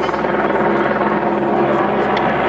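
A steady low mechanical drone, with faint voices of people nearby.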